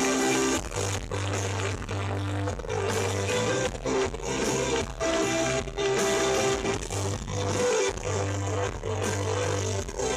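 A live rock band playing, with guitars over long held bass notes.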